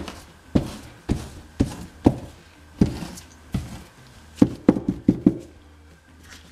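Dull knocks on a work table, about two a second, as weathering pigment is dabbed and pressed onto the fabric of a dress. Near the end they come in a quicker run of about five.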